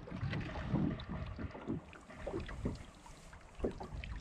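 Small waves lapping against the hull of a boat lying still on the water, a run of irregular soft slaps.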